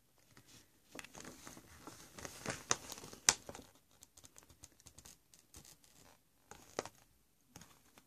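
Faint rustling and crinkling of a folded paper instruction sheet being handled and turned, with a few light ticks, busiest in the first half.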